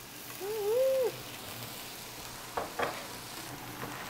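White wine poured into a hot pan of sautéed shallots, hissing and sizzling as a spatula stirs it in to deglaze the pan. A short wavering hummed voice sounds about a second in.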